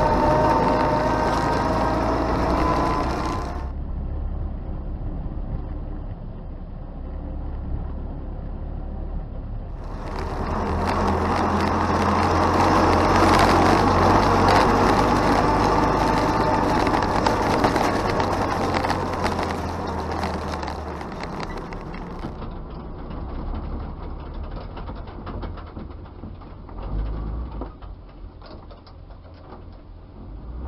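An old Dodge truck's engine and drivetrain running as it drives along, with a steady low engine note and a whine that rises and falls with speed. The sound changes abruptly at a few points where the recording switches between cameras.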